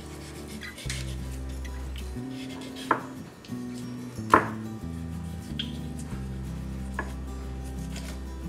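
Soft background music with sustained low notes, over which a paring knife cutting up a raw whole chicken knocks a few sharp clicks against a wooden cutting board, the loudest two about three and four and a half seconds in.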